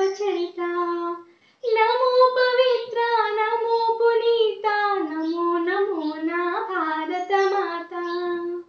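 A girl singing a patriotic song solo, unaccompanied, in long held notes, with a short break for breath about a second and a half in.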